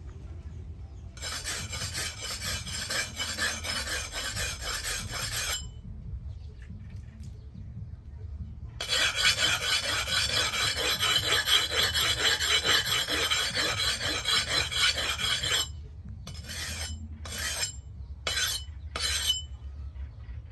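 Leaf-spring steel cleaver blade being sharpened on a sharpening stone: steel scraping on stone in rapid back-and-forth strokes. There are two long bouts of strokes with a pause between them, then a few short bursts near the end.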